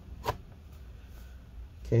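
Laptop bottom cover being pressed down onto the chassis to test-fit its clips: one short, sharp click about a quarter second in, then only faint handling noise.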